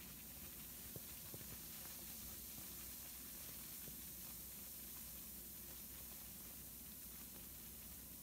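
Faint steady fizzing and hissing from a bath bomb dissolving in bath water, with a few tiny crackles.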